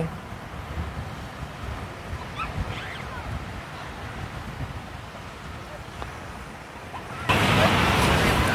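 Wind on the microphone as a low rumble, with the rush of distant surf. About seven seconds in, a much louder rush of wind and surf noise starts suddenly.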